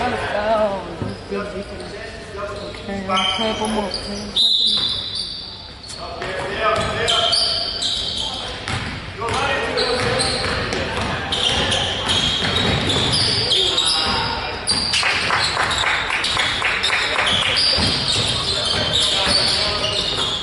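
Basketball game sounds on a hardwood gym floor: a ball being dribbled, short high sneaker squeaks and voices of players and spectators, echoing in a large gym.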